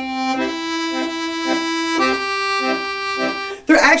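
A Hohner piano accordion sustains chords with a pulsing, wavering tone: the shake that nervous players put into the bellows. The chord shifts about half a second in and again about halfway through, and the playing stops just before the end.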